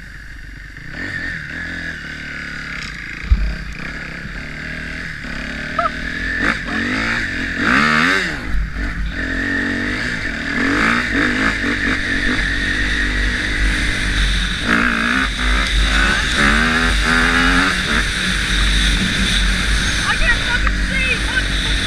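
Kawasaki KX250F four-stroke single-cylinder dirt bike engine under way, its pitch rising and falling over and over as the throttle is worked, with a low wind rumble on the microphone and one sharp knock about three seconds in.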